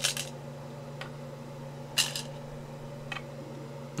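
Go stones clicking: a short clatter of stones in the wooden bowl as a hand takes some, then sharp single clicks of stones set down on the wooden board about one, two and three seconds in. A steady low hum runs underneath.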